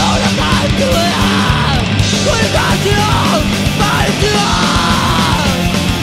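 Japanese hardcore punk recording: distorted guitars, bass and drums at a steady loud level, with yelled vocals.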